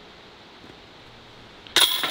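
Disc golf putt hitting the chains of a chain basket about two seconds in: a sudden, loud, short metallic jangle after near-quiet outdoor background.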